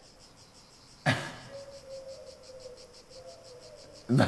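Insects chirping in a steady, rapid high pulsing, several pulses a second, with a brief louder sound about a second in.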